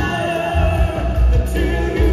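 Live band playing with singing: drum kit, electric guitar and vocalists amplified through a PA.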